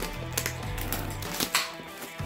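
A few sharp scratching clicks as a pocket knife cuts through the plastic wrapping of a metal collector tin, over steady background music.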